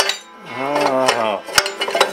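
Steel exhaust header pipe clinking and knocking against the motorcycle's frame and engine as it is worked free, with a sharp knock about a second and a half in. In the middle a low, drawn-out moan lasts about a second.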